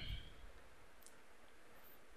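Quiet room hiss with one faint click about a second in.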